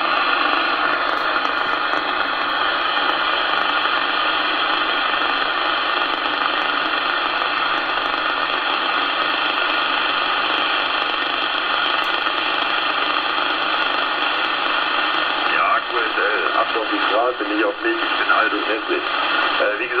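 A CB radio's speaker gives out steady, band-limited static while tuned to a channel during reception. Near the end a weak voice from a distant station starts to come through the noise.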